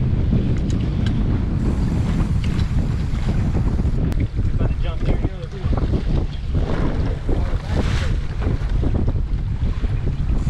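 Heavy wind buffeting the microphone, with waves washing against the hull of a small boat at sea.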